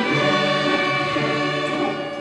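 Sixth-grade string orchestra playing: violins, violas, cellos and basses holding long, sustained chords.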